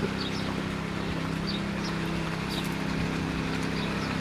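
A motor running steadily nearby, with an even low hum that does not change in pitch.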